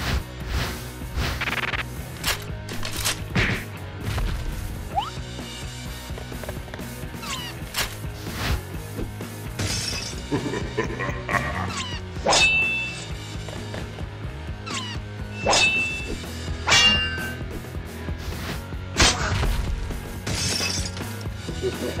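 Background music under a string of hit, crash and shattering sound effects, the loudest about halfway in and again near the end.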